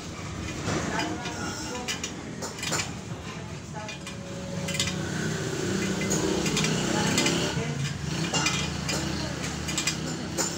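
Scattered light metallic clinks and ticks from a motorcycle wire-spoke wheel being trued on a stand, as a spoke wrench works the spoke nipples.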